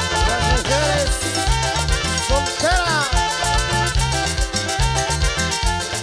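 Live regional Mexican band playing an instrumental son. Electric bass and drums keep a driving beat, a metal güiro scrapes in even fast strokes, and a melody line with sliding notes runs over them.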